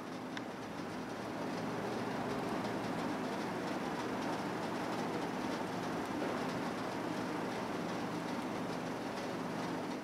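Steady low hum and hiss of background noise.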